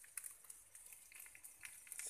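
Faint sizzle of rice and noodles frying in a steel wok, with scattered small crackles.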